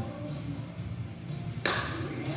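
A single sharp crack of a bat hitting a ball, about one and a half seconds in, over a steady low hum.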